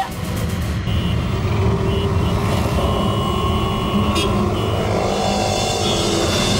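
Busy city road traffic: a steady low rumble of many vehicle engines, with brief high-pitched tones sounding now and then.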